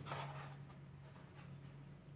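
Faint handling noise of test leads being pressed and rubbed against a TV's LED backlight strip, a soft rustle at the start that fades out, over a low steady hum.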